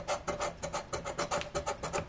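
Scratcher coin scraping the coating off a paper scratch-off lottery ticket in quick repeated strokes, several a second.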